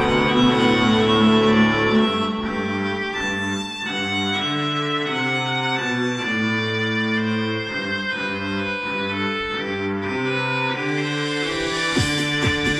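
Music with sustained bowed-string parts moving through slow chord changes, played through a home-built three-way bass horn loudspeaker. A beat with hissy percussion comes in near the end.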